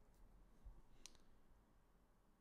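Near silence with a few faint computer mouse clicks, the sharpest about a second in.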